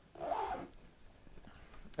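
A fabric luggage zipper pulled briefly: one short rasp about half a second long, near the start.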